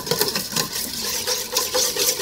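Wire whisk beating egg yolks in a stainless steel bowl set over simmering water, a fast, even run of scraping, clicking strokes of the wires against the metal. This is the start of whisking a sabayon.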